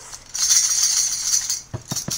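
An old tambourine shaken, its jingles rattling for just over a second, followed by a few short knocks near the end.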